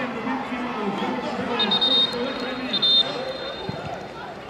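A referee's whistle blown twice, two short shrill blasts about a second apart, over people talking.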